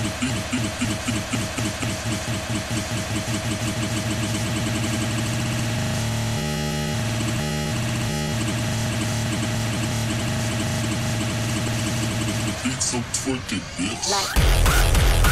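Hardcore gabber DJ mix in a breakdown with no kick drum: a dense, distorted synth wash, broken by three short cut-outs about halfway through. A fast pulsing pattern fades out at the start and comes back near the end.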